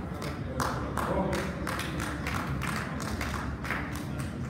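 Hand claps from the audience, sharp strokes about three a second, over a low rumble in the hall.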